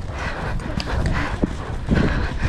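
Hoofbeats of a horse galloping on turf, heard from on its back, the strides thudding about twice a second over a constant low rumble.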